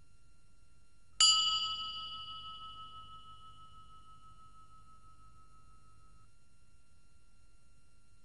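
A single bell-like chime struck once about a second in, ringing with several clear tones and fading away over the next few seconds.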